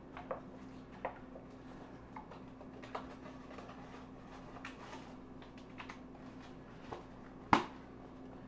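Faint clicks and light scrapes of a spoon stirring sliced mushrooms into soup in a plastic-lined slow cooker, over a low steady hum. One sharper knock comes near the end.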